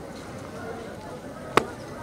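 A single sharp crack from a drill movement, about one and a half seconds in, as a cadet brings his stick up to the upright. Faint voices are in the background.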